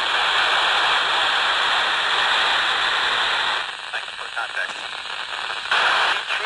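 Baofeng BF-F8+ handheld radio's speaker hissing with FM static while tuned to the weak SO-50 satellite downlink. Past the middle, for about two seconds, the hiss drops as a signal comes through carrying a faint, garbled voice, then loud static returns.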